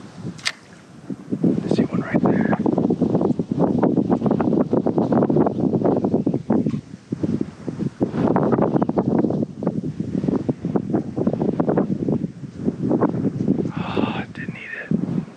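Wind buffeting the camera microphone in gusts, coming and going in waves.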